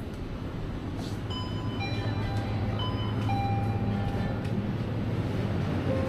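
Convenience-store ambience: a simple electronic melody of clear, chime-like tones plays over a steady low hum, which grows slowly louder.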